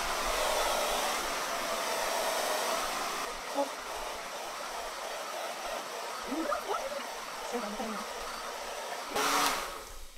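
A DevaDryer hair dryer with a diffuser attachment blows steadily on medium speed and heat while curly hair is scrunched into the diffuser. It eases a little about three seconds in, swells briefly louder just before the end, and then cuts off.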